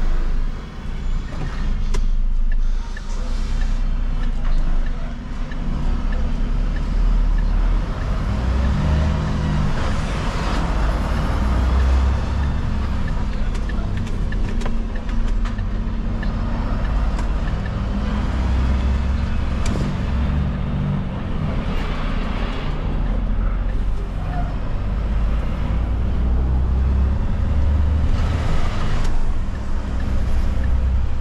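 Diesel engine of a refuse collection truck heard from inside the cab while driving, with road noise and a low engine note that rises and falls with the traffic.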